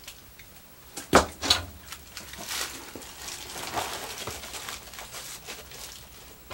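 Handling noise as a foil-wrapped rock with a small tree on it is set down into a plastic pot: a single sharp knock about a second in, then rustling and crinkling of aluminium foil with a few small clicks.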